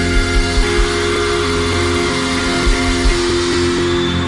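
Live band music: a sustained held chord, with a few deep drum thumps in the first second and again near the end.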